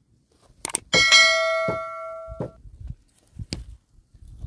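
Subscribe-button animation sound effect: a couple of mouse clicks, then a bell chime about a second in that rings for about a second and a half and fades, and another click near the end.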